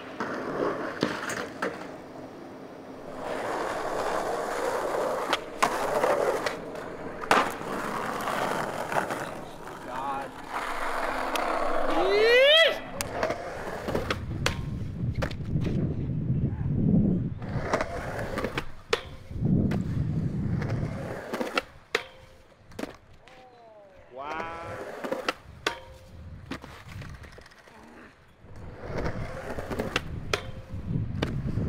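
Skateboard on concrete and asphalt: the wheels roll with a rumble, broken by sharp pops and clacks as the tail snaps and the board and wheels slap down on landing. In one bail the board clatters away on its own.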